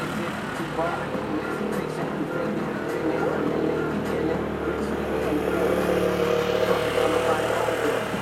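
A motorcycle engine running as it approaches, growing louder through the second half and passing close by near the end, over general street noise.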